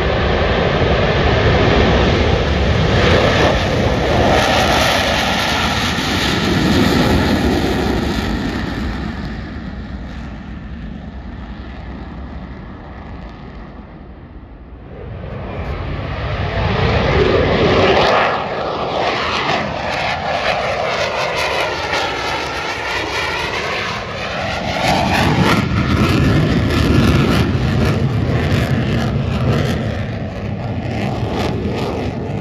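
Blue Angels F/A-18 Hornet jets at full power on take-off: a loud jet roar that fades away over the first dozen seconds. About fifteen seconds in, a second jet's roar builds again, sweeping down and back up in pitch as it passes, then stays loud.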